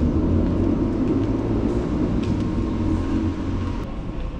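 Steady low rumble with no speech, the kind of mixed background noise picked up by a camera carried through a large store.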